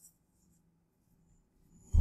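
Near silence: room tone, with one faint mouse click at the very start.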